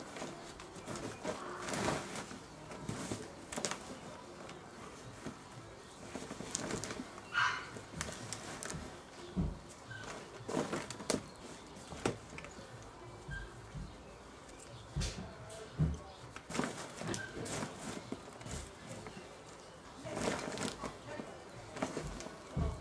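Plastic tarp rustling and crinkling in irregular bursts as potting mix is turned over by hand on it.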